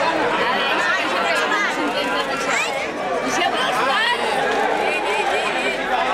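Crowd of many people talking and shouting at once, a dense jumble of voices with frequent rising and falling calls.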